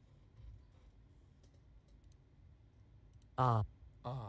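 A few faint computer mouse clicks, then a single short voice sound lasting about a third of a second near the end.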